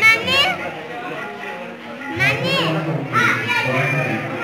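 Children shrieking and calling out at a crowded gathering: two high, sliding squeals, one at the start and one about two seconds in, over a mix of adult chatter.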